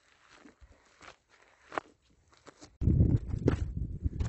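Footsteps crunching on a dry gravel-and-dirt mountain trail, a few soft steps a second. About three seconds in, a loud, rough rumble of wind on the microphone starts suddenly and takes over, with the steps still heard under it.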